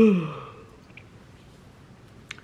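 A woman yawning aloud with her hand over her mouth. The yawn is loudest at the very start, its pitch dipping and then falling away, and it fades out within about half a second.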